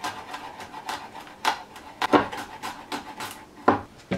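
Chef's knife chopping garlic on a wooden cutting board: a run of irregular knocks of the blade on the wood, with a few louder strikes.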